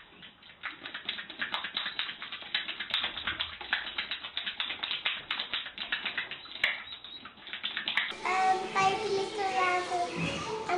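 A horse at its stall door making a rapid, irregular clicking and smacking with its mouth, several clicks a second. It gives way about eight seconds in to a young child talking.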